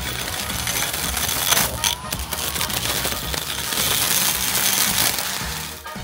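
Osuka OCBC 511 cordless electric brush cutter with a plastic blade head, running at full power and cutting grass over hard laterite ground, with a few sharp ticks of struck grit about one and a half to two seconds in. With this blade the cutting is slow and laboured.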